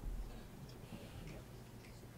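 Quiet room tone with a few faint, light clicks or taps at uneven spacing.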